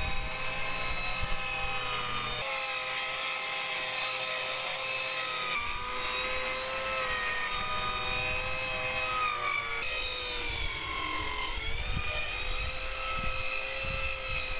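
Corded circular saw running as it cuts through a plywood sheet, a steady high motor whine whose pitch sags slightly a couple of times in the second half as the blade takes load.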